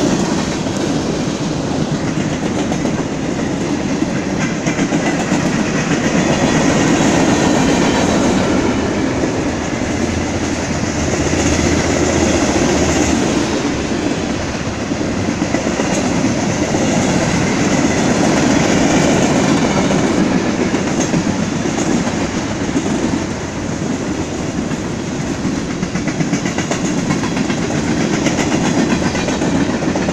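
BNSF mixed freight train's boxcars and tank cars rolling past steadily: continuous noise of steel wheels on rail, with rapid clicks as the wheels cross rail joints.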